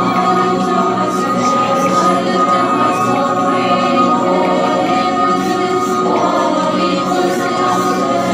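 A group of women singing a hymn of praise together in chorus.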